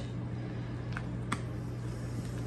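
A rubber spatula folding whipped topping through a thick, creamy pie filling in a bowl: soft, faint squishing, with two light ticks a little after a second in, over a steady low hum.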